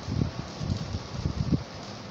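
Irregular low rumbling thumps and rustling, several a second, over a steady hiss: noise on the microphone itself rather than any clear sound event.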